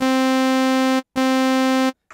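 Korg Kronos synthesizer playing the same sustained note twice, each held just under a second at a steady pitch and cut off cleanly. Three layered timbres sound together, delayed into phase alignment.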